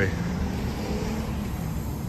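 Low, steady rumble of a road vehicle's engine with street traffic noise, dropping a little in level just after the start.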